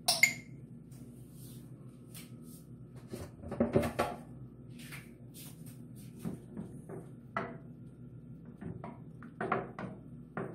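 Kitchen utensils clinking and knocking against a stainless steel bowl and the stovetop: a sharp clink right at the start, a cluster of handling knocks about four seconds in, then scattered lighter taps, over a faint steady hum.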